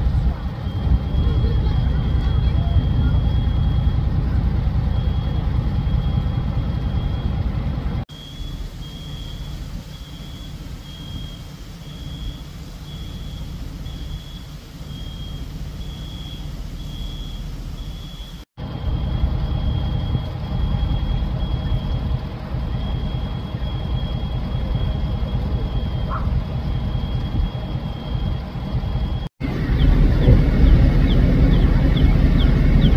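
A high-pitched electronic alarm tone, steady at times and beeping in a regular pattern for a stretch in the middle, over a low outdoor rumble of wind and traffic.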